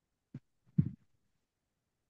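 Two short, soft low thumps about half a second apart, the second one louder.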